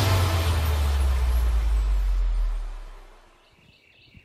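Low rumbling, noisy sound effect at the end of a TV-style title sequence, fading out over about three seconds to near quiet.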